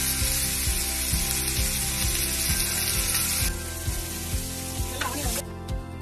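Chopped red onions sizzling in hot oil on a flat pan, loud for the first three and a half seconds and then quieter. A steady beat of background music runs underneath.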